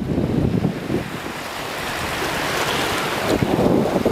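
Shallow seawater sloshing and lapping, with wind rumbling on the microphone; a brighter hiss of moving water swells about halfway through.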